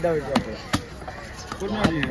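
Heavy cleaver chopping through red snapper fillet onto a wooden log chopping block: three sharp chops, two in the first second and one near the end.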